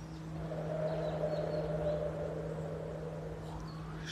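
A person's long, slow breath close to the microphone, lasting about three seconds, taken during a guided breathing exercise. A low steady hum runs underneath.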